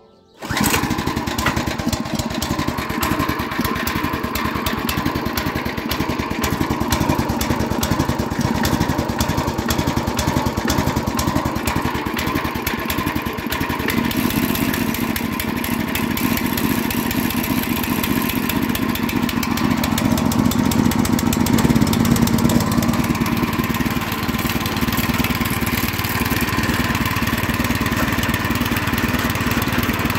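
WEMA WM900 tiller's small single-cylinder petrol engine catching on a pull of the starter cord with the choke on, then running steadily. It fires on the first pull after three weeks unused, since its carburettor was cleaned. The tone shifts about halfway through and it runs a little louder for a few seconds after that.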